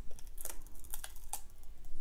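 Brushed metallic self-adhesive vinyl being peeled off its backing by hand, giving a run of small, irregular crackles and ticks.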